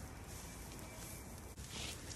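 Faint, steady sizzle of a pork shoulder steak searing on a hot grill plate over a wood fire, with a low outdoor rumble underneath; the sound briefly dips about one and a half seconds in.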